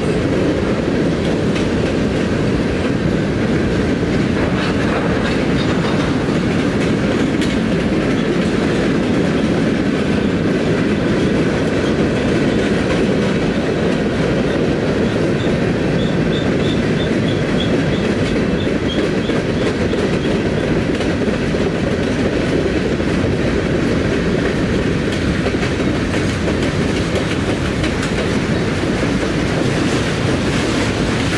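Norfolk Southern freight train cars rolling past at close range: steady, loud noise of steel wheels running on the rails as car after car goes by.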